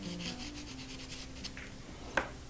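A pastel stick scratching across textured pastel paper in rapid short scrubbing strokes, several a second for about the first second, with one more stroke about halfway through.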